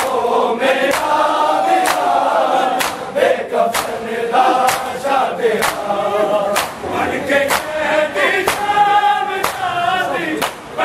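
A group of men chanting a noha, a Shia lament, in unison. Hands slap on bare chests in matam, sharp strikes keeping a steady beat about once a second.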